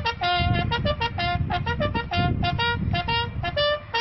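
A brass instrument playing a fast military call of short, clipped notes that step up and down in pitch, as a graveside salute, over a low rumble.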